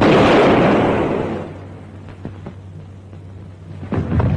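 A sudden loud bang that dies away over about a second and a half. A second, shorter knock comes at the very end.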